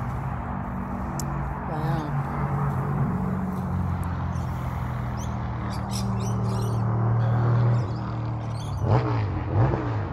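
Steady road traffic hum from a highway, a vehicle's engine drone building and then dropping away about eight seconds in. Birds chirp in the second half.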